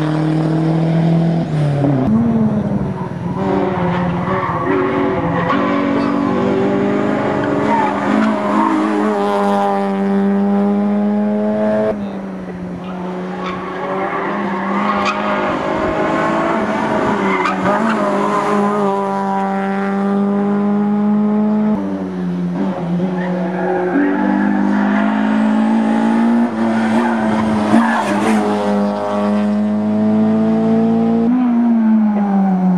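Rally cars driving hard through a tarmac stage one after another: engines revving up in rising glides through the gears and dropping in pitch on lifts and downshifts. The sound changes abruptly twice as one car gives way to the next.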